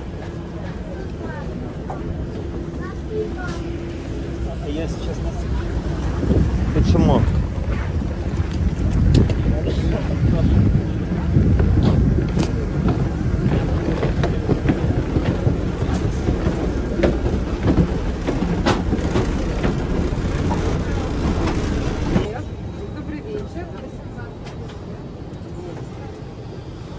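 Loud outdoor airport apron noise with wind on the microphone and footsteps on the boarding stairs, scattered with sharp clicks and knocks. It drops suddenly about 22 seconds in to the quieter steady hum of the aircraft cabin.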